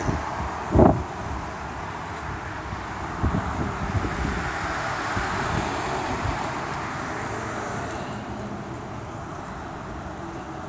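Outdoor background noise of road traffic with wind on the microphone, steady throughout, with a short low thump about a second in.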